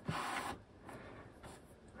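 Cardboard panels of a Mac Studio box rubbing and sliding as they are folded open, with a soft click at the start and the main scrape in the first half second, then fainter rustling.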